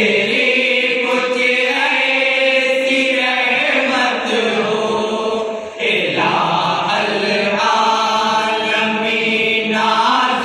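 A group of men chanting devotional Islamic verse in unison into one microphone, unaccompanied, holding long melodic notes, with a short break for breath about six seconds in.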